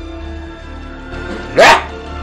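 Film-score background music with soft held notes over a low hum. Near the end, one short loud vocal burst cuts in.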